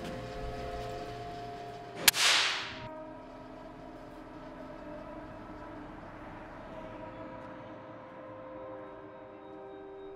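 A flame being lit on a small gas burner: one sharp click, then a short hiss that fades within about a second. A low, sustained music drone runs underneath.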